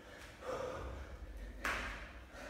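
A man breathing hard between jumping burpees, with a short sharp burst of sound about one and a half seconds in, as he drops his hands to the floor.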